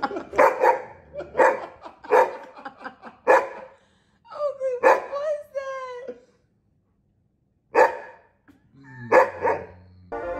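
A fluffy doodle-type dog barking in a quick run of about six short barks, then giving one long drawn-out whining howl that wavers in pitch for about two seconds, then a few more short barks near the end.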